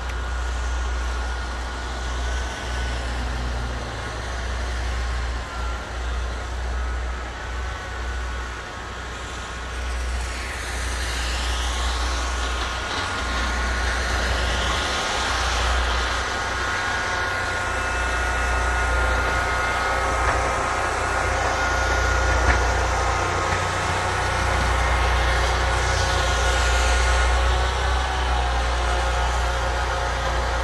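Ariens Mammoth's engine running steadily with a whine as it pushes wet snow with its V-plow. Cars swish past on the wet road about ten seconds in and again near the end.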